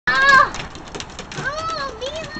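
A dog whining excitedly in play: a short, high-pitched whine right at the start and a second, longer one that rises and falls about a second and a half in.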